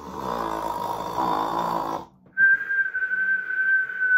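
A person imitating a sleeping character's snore: a rasping snore lasting about two seconds, then after a short pause a long steady whistle that dips at its end. This is the cartoon snore-and-whistle of someone fast asleep.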